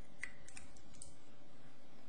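A handful of faint light clicks in the first second, over a steady background hiss.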